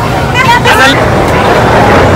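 People's voices, with a short excited high-pitched shout or squeal about half a second in, over a loud steady rumbling noise.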